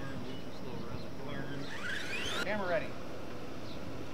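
RC monster truck's electric motor whining as it revs, rising in pitch for about a second before cutting off sharply, then a brief wavering tone.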